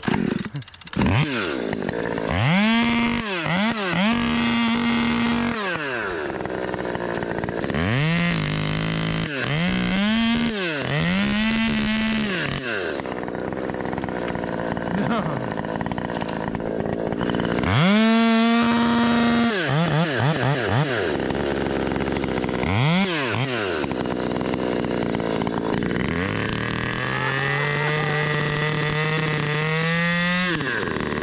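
Gas-powered top-handle chainsaw revved in a series of full-throttle bursts while cutting a maple stem. Each burst climbs to a high, flat pitch and falls back, and the pitch sometimes holds lower for a moment as the chain bites into the wood. Near the end the saw runs at a lower, steadier speed.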